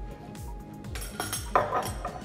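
Background music with a steady beat, and about one and a half seconds in a short clink of kitchenware from the teaspoon, glass bowl or glass bottle being handled on the counter.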